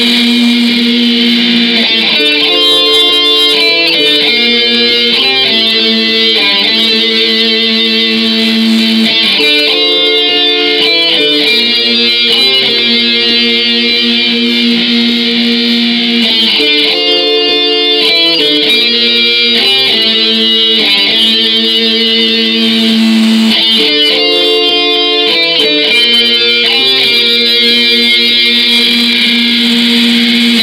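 A black metal band playing live: distorted electric guitars hold chords that change every second or two. The recording is thin, with little bass.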